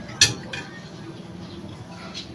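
A metal utensil clinking against dishware: one sharp clink about a quarter second in, then a softer one just after.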